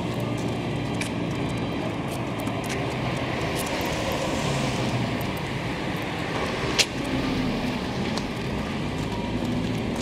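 Street traffic: a steady rush of cars on the road alongside, swelling as a car passes about halfway through, with one sharp click about seven seconds in.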